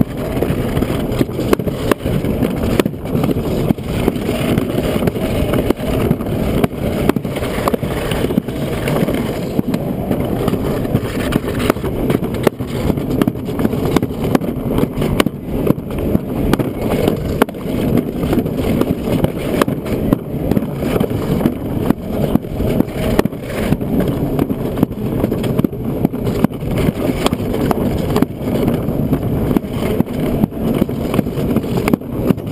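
Alpine slide sled running fast down the chute: a steady rolling noise from its wheels on the track, broken by frequent small clicks and knocks as it goes over the joints and bumps.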